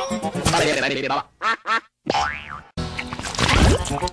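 Edited cartoon logo soundtrack: music with warped, cartoonish vocal and sound-effect noises, chopped and stuttered by the edit, cutting out briefly about halfway through.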